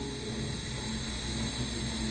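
Room tone in a pause between spoken sentences: a steady low hiss with a faint hum, and no distinct event.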